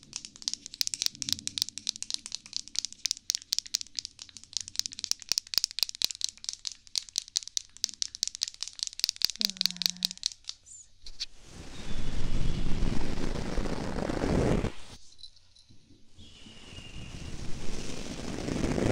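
Fluffy makeup brush worked against the microphone: rapid, even scratchy strokes for about the first ten seconds, then slower, louder and fuller sweeps that pause briefly and swell again near the end.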